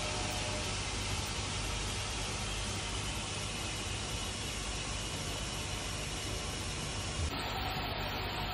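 Steady hissing background noise with no distinct events; about seven seconds in, the sound changes abruptly at an edit.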